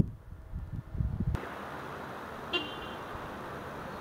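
Wind rumbling on the microphone for about the first second, then a steady outdoor background hiss, with one short high-pitched toot about two and a half seconds in.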